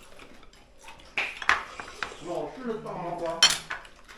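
Chopsticks and spoons clinking against ceramic bowls and plates during a meal: a few sharp clinks, the loudest about halfway through and again near the end.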